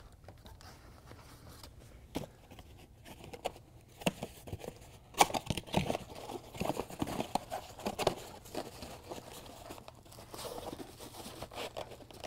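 Packaging being handled: plastic bags crinkling and a small cardboard speaker box being picked up and opened, a faint scatter of crackles and taps that thickens about four seconds in.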